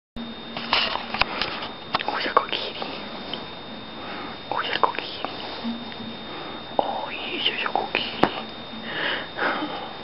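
Soft whispering, with breathy bursts and a few sharp clicks and rustles from handling. A faint steady high whine runs underneath.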